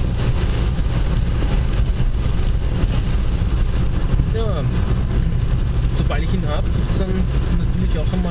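Car driving on a wet road, heard from inside the cabin: a steady low engine and road rumble with tyre noise.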